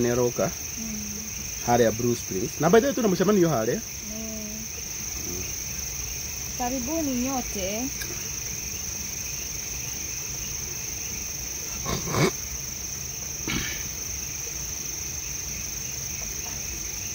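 Crickets chirring with a high, steady tone. Short stretches of voices break in during the first four seconds and again briefly around seven seconds, and two sharp knocks sound near the end.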